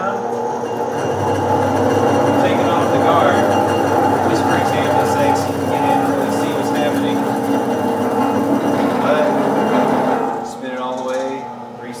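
Baileigh TN-800 tube and pipe notcher running, its eccentric head driving a roughing end mill through a metal tube to cut a notch: a steady motor hum under a dense grinding cutting noise. The cutting eases off about ten and a half seconds in as the single circle of the notch finishes.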